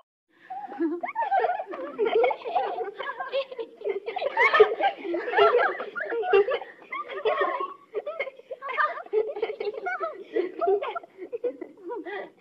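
High-pitched voices laughing and giggling in a continuous stream, without clear words.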